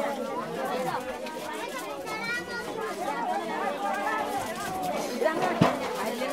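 Crowd chatter: many people talking at once, overlapping voices with no single speaker standing out, and one sharp knock near the end.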